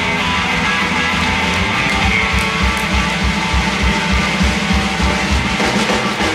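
Live rock band playing, amplified through a PA: electric guitars over bass and a drum kit, with a steady kick-drum beat that grows stronger about two seconds in.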